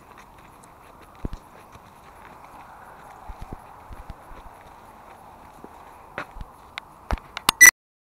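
Scattered knocks and clicks over a faint steady hiss, with a louder burst of clicks near the end before the sound cuts off suddenly.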